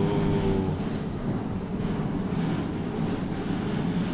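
Steady low background rumble of a large, busy indoor hall, with no single sound standing out. A man's voice trails off in a held syllable in the first moment.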